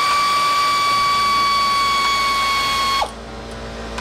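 Electric ratchet spinning out a 10 mm bolt: a steady, high motor whine that cuts off suddenly about three seconds in.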